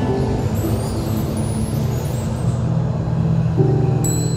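Instrumental music on nylon-string acoustic guitar, with held notes changing over a steady low drone.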